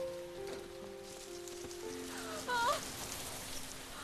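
Orchestral film score playing long held chords over a steady rustling hiss. A short wavering cry from a voice breaks in about two and a half seconds in.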